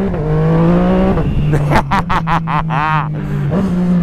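Yamaha MT motorcycle engine revving hard under acceleration, its pitch climbing, dropping at a gear change about a second in, then pulling again. The exhaust crackles and pops in quick sharp bangs, which the rider calls 'pipocão'.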